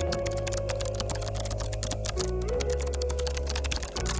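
Computer keyboard typing sound effect, a rapid run of key clicks, over background music with held chords and a low bass.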